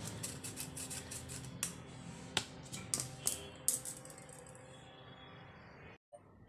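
A spoon scraping and tapping inside a fine metal mesh sieve to sift flour. First comes a quick run of light clicks and scrapes, then a few sharper ticks spaced further apart, and the sound trails off near the end.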